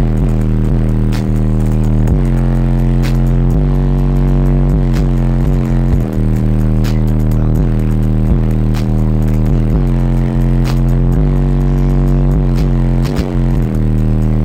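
Hip hop track playing loud through a car's stereo, dominated by a heavy, sustained bass line with downward-sliding bass notes every couple of seconds and light percussion above.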